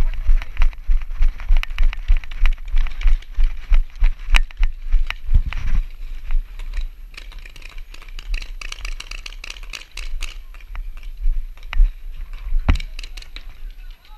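Running footsteps on hard dirt, about three heavy thuds a second with gear and a paintball marker rattling, for roughly the first six seconds. After that the movement slows and sharp paintball marker shots pop now and then.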